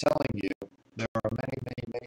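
A man speaking in a steady lecture-style monologue, with a brief pause about half a second in.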